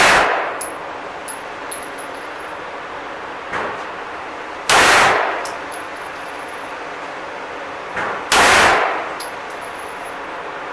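Glock 34 9 mm pistol firing single shots at a slow pace. The echo of one shot dies away as the clip begins, then two more loud shots come about four seconds apart, each with a reverberant tail. A quieter bang comes shortly before each of the two shots, and faint high metallic tinkles sound between shots.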